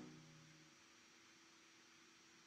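The last chord of a solo piano piece dying away over the first half second or so, with a faint low tone lingering, then near silence: room tone.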